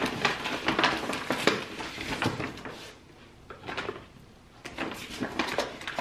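A paper grocery bag rustling and crinkling, with groceries knocking and being shuffled around inside it as someone rummages through it. The handling goes quiet for a moment past the middle, then starts up again.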